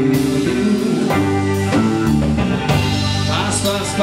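A band playing a pop-rock song, with guitar and drums over a steady low bass line.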